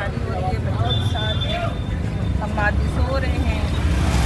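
Auto-rickshaw engine running with a steady low rumble, with people's voices talking over it.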